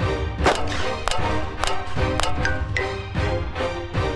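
Four pistol shots about half a second apart, each sharp and followed by a short ring, over background music with a steady beat.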